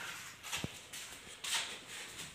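A few faint clicks and knocks with brief rustling, a person handling things by a wall switchboard.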